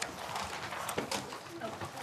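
Classroom background: children's voices murmuring faintly, with a few light knocks, about a second apart.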